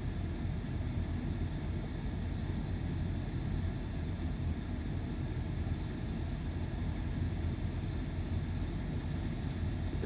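Steady low rumble inside a car's cabin, with the engine idling while the car sits stopped.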